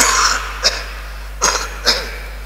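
A man coughing into his sleeve: one longer cough at the start, then three short coughs, the last two close together.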